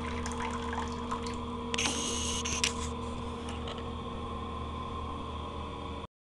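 Thin trickle of water running from a single-lever bathroom sink faucet into the basin, the weak flow of low water pressure even though the faucet is new. A louder hiss lasts about a second from around two seconds in, over a steady background hum.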